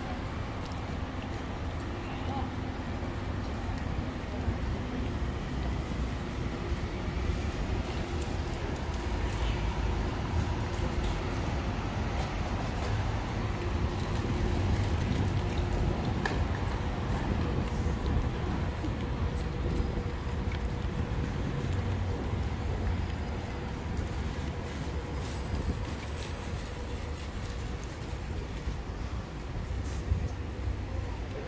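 Town street ambience: a steady low rumble of road traffic with passers-by talking in the background.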